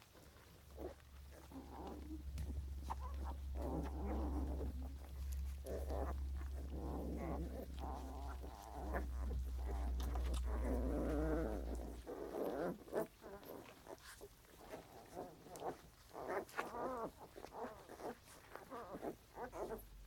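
Newborn puppies grunting and squeaking in many short bursts as they suckle, thickest in the first twelve seconds and more scattered after. A steady low hum underlies the sound until about twelve seconds in.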